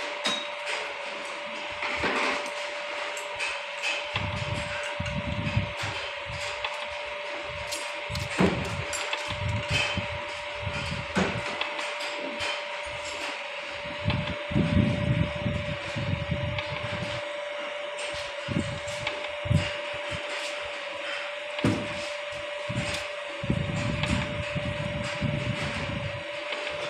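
Radial six-plunger lubrication pump running under a pressure trial, with a steady high-pitched hum from its drive and irregular clicks and low knocks throughout.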